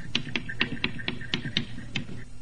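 Chalk writing on a blackboard: quick, slightly uneven taps, about four a second, with a faint squeak of chalk between some of them.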